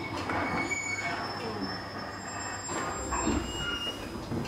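Electric commuter train slowing at a station platform, its brakes and wheels squealing in several thin high tones over the running rumble.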